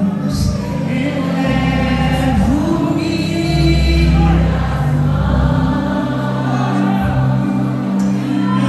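A woman singing a gospel worship song into a handheld microphone with long held notes, over amplified instrumental accompaniment with a sustained bass.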